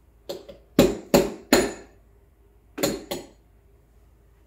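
Espresso portafilter knocked hard several times to dump the spent coffee puck: sharp metallic knocks with a brief ring. There is a quick run of five in the first two seconds, then two more near the end.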